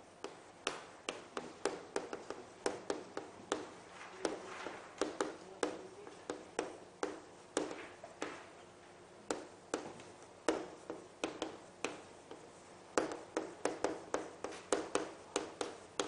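A stick of chalk writing on a chalkboard: a string of sharp, irregular taps and light scrapes as each stroke is made, in quick clusters with short pauses between words.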